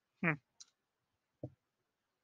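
A short murmured 'hmm', then a faint high tick and, about a second later, a soft low click from someone working at a computer desk.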